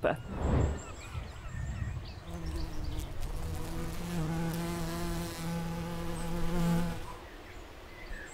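Buzzing of a bee, a steady, slightly wavering drone that starts about two seconds in and stops about seven seconds in, after a soft whoosh near the start.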